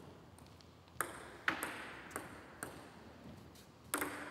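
A table tennis ball bouncing on a hard surface before a serve: five sharp ticks roughly half a second apart, each with a short ring.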